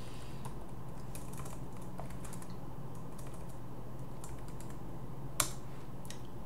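Computer keyboard typing: scattered light key clicks, then one sharper, louder keystroke about five seconds in. A low steady hum sits underneath.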